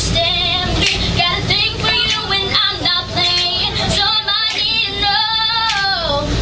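A young girl singing a pop song unaccompanied, with vibrato and a long held note near the end.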